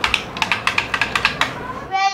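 A quick, irregular run of about ten sharp plastic clicks from the toy RC car's handheld remote control being handled.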